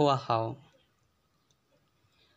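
A man telling a story in Hmong, his phrase ending about a third of the way in, followed by near silence.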